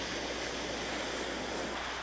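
Ocean surf washing onto a sandy beach, a steady rush of water.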